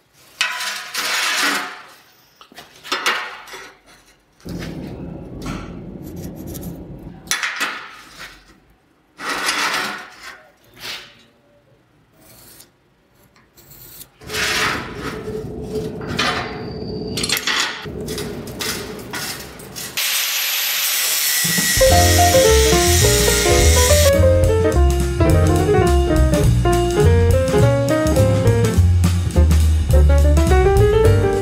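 Irregular scraping and rubbing strokes of steel flat bar being handled on a steel table, followed about two-thirds of the way in by a few seconds of loud hiss. Jazz music with piano, double bass and drums then takes over.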